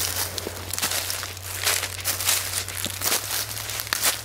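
Footsteps crunching and rustling through dry fallen leaves, repeating at a walking pace.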